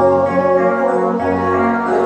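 Live gospel worship music: a praise team and congregation singing over keyboard accompaniment, with long held notes.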